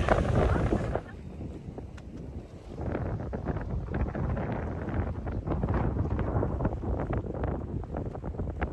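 Wind buffeting the microphone aboard a sailboat under sail, a gusty low rumble that drops after a brief word at the start and builds again about three seconds in, with short splashy water sounds mixed in.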